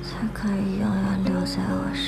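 A soft, whispered voice line over gentle acoustic guitar background music.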